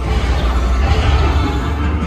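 Dark-ride soundtrack music played over the attraction's sound system, with a deep rumble underneath that swells about a second in.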